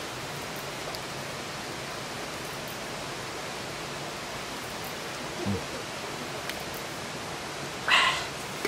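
A wood fire burning in a campfire brazier: a few faint crackles over a steady, even rushing noise. A short low sound comes about five and a half seconds in, and a louder knock right at the end.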